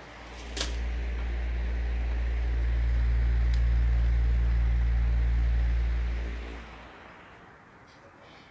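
A sharp click, then a loud, steady low hum from the pedestal fan driving air over a freewheeling model-aircraft propeller; the hum dies away about six and a half seconds in, as the propeller is brought to a stop.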